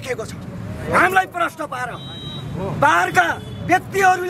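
A man speaking loudly in two bursts, about a second in and about three seconds in, over a low, steady rumble of street traffic.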